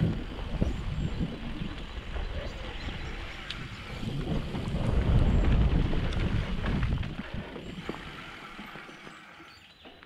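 Mountain bike riding over a dry dirt trail: tyre noise and knocks and rattles over the bumps, with wind rushing on the microphone. It builds to its loudest around the middle and dies down near the end.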